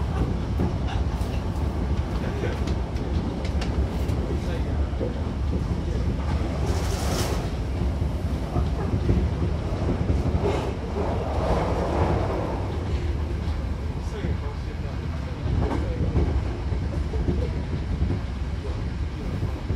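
Hankyu Kobe Line electric train running at speed, heard from inside the carriage: a steady low rumble with wheels clicking over the rail joints, and a brief rushing hiss about seven seconds in.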